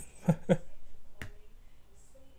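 A short laugh, then a single sharp computer-mouse click a little over a second in.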